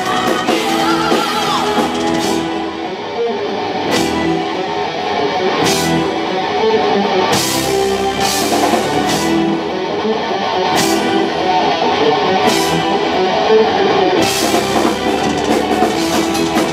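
Live symphonic power metal band playing loud: distorted electric guitars and bass over a drum kit, with cymbal crashes several times.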